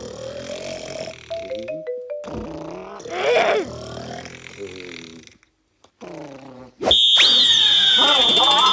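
Cartoon character snoring and vocal sleep noises, with one louder rising snort in the middle. Near the end a long, shrill whistle blast starts and upbeat electronic dance music kicks in.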